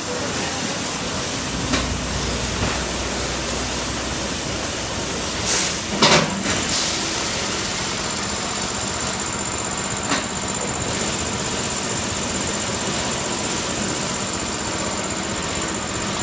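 Automatic packaging machine running in a factory workshop: a steady mechanical noise, with a few sharp knocks, a short hiss about five and a half seconds in, and a thin high whine that sets in about seven seconds in and holds.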